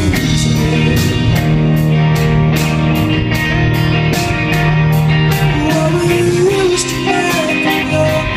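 Live rock band playing at full volume: distorted electric guitars, bass and drums, with cymbal hits about three times a second. A male lead voice sings over it, with a long sung note near the end.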